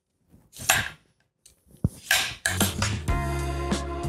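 Y-peeler scraping the skin off a russet potato in two short strokes, with a sharp click between them. Background music with a steady beat comes in about halfway through.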